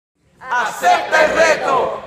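A small group of people shouting together, several voices at once, starting about half a second in.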